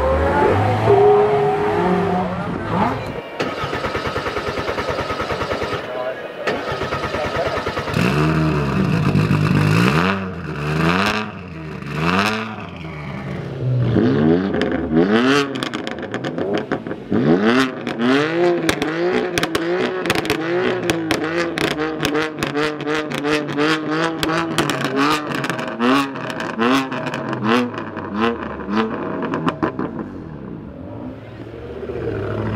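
A Lamborghini Murciélago Roadster's V12 pulling away at the start. After a cut, a parked BMW M4's twin-turbo straight-six is revved again and again in short blips, about one a second, with sharp pops from the exhaust between the blips.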